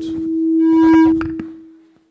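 Microphone feedback from the PA: a single steady pitched tone that swells for about a second and then fades out.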